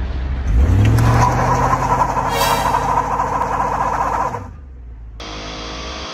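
BMW E34 540i's V8 revs up from idle about half a second in and is held high while a rear tyre spins and squeals in a burnout, a one-wheel peel from the open differential. The revs drop back to idle after about four seconds.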